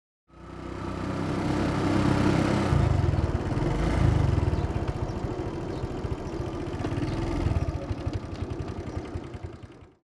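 Small motorcycle engine of a loader rickshaw running as it approaches, growing louder over the first couple of seconds, picking up twice, then dying away near the end as it pulls up.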